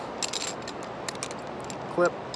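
Light metallic clicks and clinks of carabiners and anchor hardware as a rope end is handled and fed through them: a quick cluster of clicks about a quarter-second in, then scattered faint ticks.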